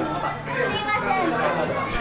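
Several people talking over each other, a child's voice among them, over a steady low hum.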